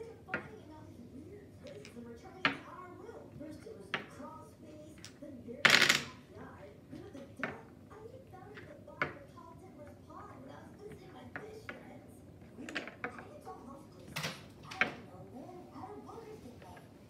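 Domino tiles being set down upright one by one on a tabletop, a short sharp click every second or two. The loudest, a longer clatter, comes about six seconds in.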